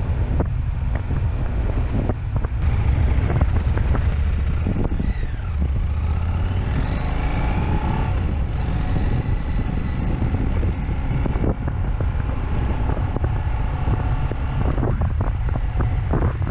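Wind buffeting a helmet-mounted camera's microphone while an adventure motorcycle rides a dirt two-track, with the engine and the tyres on loose dirt underneath and scattered knocks from bumps. The sound shifts in character about three seconds in and again near twelve seconds.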